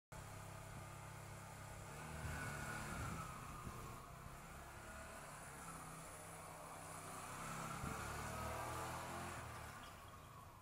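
Faint, distant Yamaha YBR125 single-cylinder four-stroke engine revving up and down as the motorcycle weaves between cones. It swells louder twice, about two seconds in and again around eight seconds.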